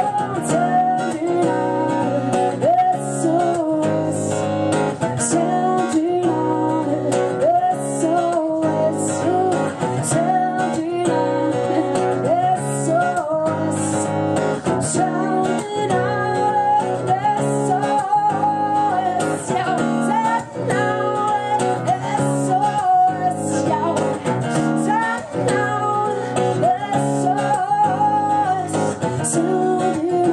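A woman singing live over her own strummed acoustic guitar, a steady groove with the voice gliding between notes.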